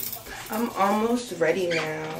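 A woman's voice making short, rising and falling vocal sounds without clear words, starting about half a second in.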